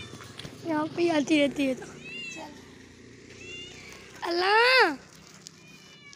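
Cat meowing: a few short meows about a second in, then one long meow a little after four seconds that rises and then falls in pitch.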